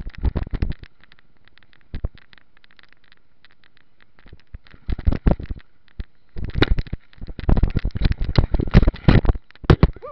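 Mountain bike clattering and rattling as it is ridden over a rough, wet trail: irregular bursts of knocks and rattles, heaviest in the second half.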